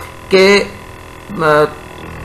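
Steady electrical mains hum on the recording, under a man's voice speaking two short syllables in Urdu, one just after the start and one about a second and a half in.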